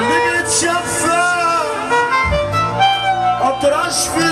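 A man singing live into a microphone over amplified band accompaniment at Egyptian sha'bi wedding music, with long held notes that bend and slide in pitch.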